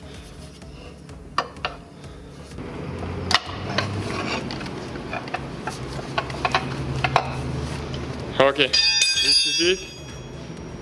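Metal clicks and scraping as a stuck water pump pulley is pried loose with a pry bar, worked off a little at a time. Near the end a short metallic ring sounds as the pulley comes free.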